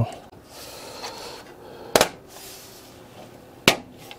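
Front panel of a Corsair 275R Airflow PC case snapping onto the case: two sharp clicks, one about halfway through and one near the end, as its clips seat. Underneath runs the faint steady hum of the running PC's fans.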